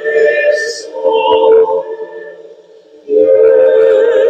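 Voices singing a hymn in sustained, held notes. One phrase fades out a little past two seconds in, and the next begins about three seconds in.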